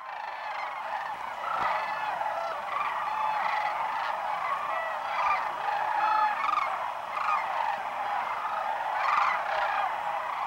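A large flock of sandhill cranes calling, many calls overlapping into one continuous chorus at a steady level.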